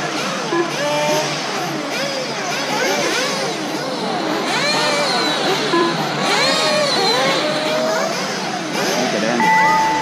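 Several electric RC buggies' motors whining together, each pitch rising and falling as the cars accelerate and brake around the track. Near the end a steady tone holds for about a second.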